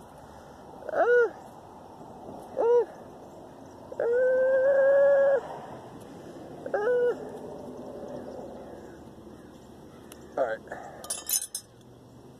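A man's strained vocal noises while bending copper pipe by hand: three short grunts and, in the middle, one held groan lasting about a second and a half. Near the end come a few light metal clinks.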